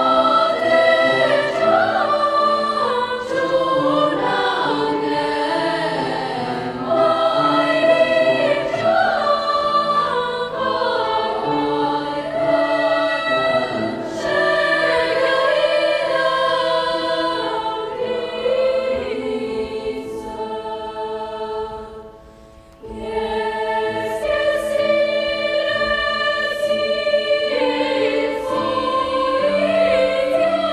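Girls' choir singing in multi-part harmony, with a short break between phrases about three-quarters of the way through before the voices come back in.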